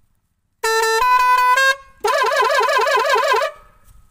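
Loud multi-tone musical horn: a quick run of short stepped notes, then a fast warbling trill of about seven wobbles a second that lasts about a second and a half.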